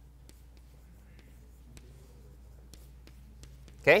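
Chalk tapping and scratching faintly on a chalkboard as an equation is written, in scattered light clicks over a steady low hum.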